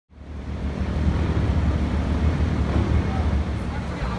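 Busy city street ambience: steady traffic noise with a heavy low rumble, fading in over the first second.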